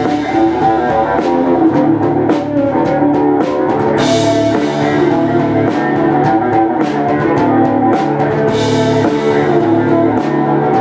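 Live rock band playing an instrumental passage: guitars over a drum kit with a steady beat, and cymbal crashes about four and eight and a half seconds in.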